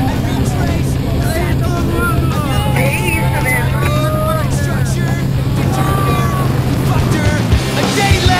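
Steady drone of a skydiving jump plane's engine and propeller heard from inside the cabin during the climb, with voices over it; the drone stops near the end.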